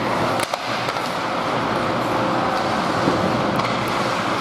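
Ice hockey play in an indoor rink: a steady wash of skates scraping on the ice and rink noise, with a few sharp clacks of sticks and puck.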